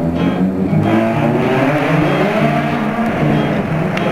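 Nissan VQ35DE V6 exhaust through long-tube headers with the catalytic converters removed, running very loud, its pitch rising and falling once around the middle.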